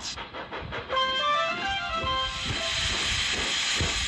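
Closing music from a children's TV programme: a short tune of stepped notes begins about a second in, followed by a broad hiss, like a steam engine letting off steam, that swells toward the end.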